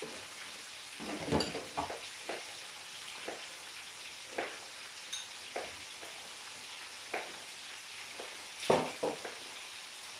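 Fish frying in hot oil, a steady sizzling hiss, with irregular knocks of a knife cutting a red bell pepper on a plastic chopping board; the loudest knock comes near the end.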